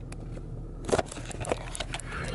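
Car running, heard from inside the cabin as a steady low hum, with several handling clicks and knocks as the camera is moved about.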